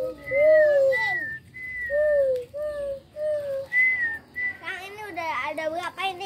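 A person whistling a string of short, gliding notes, some low and some high, for the first four seconds or so.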